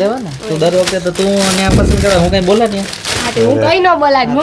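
Plastic garment packaging crinkling in short bursts as a folded pair of trousers is taken out and handled, under voices talking.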